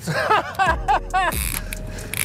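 A person laughing excitedly in a quick run of high bursts that rise and fall in pitch, stopping about a second and a half in. A steady low hum runs underneath from about a third of the way in.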